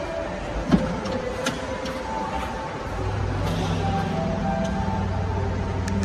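Background music with held notes; a deeper bass part comes in about halfway through. There is one short thump just under a second in.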